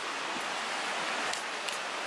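Steady rush of flowing water, a stream or small cascade running beside a wooden boardwalk, an even hiss with no distinct events.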